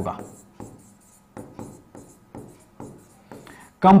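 Writing on a board by hand: a run of short, irregular strokes as a word is written out.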